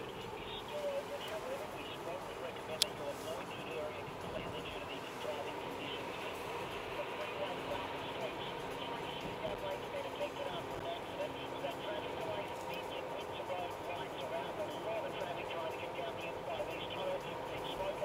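Moving car heard from inside the cabin: steady engine and road noise with faint, indistinct voices running underneath, and a single sharp click about three seconds in.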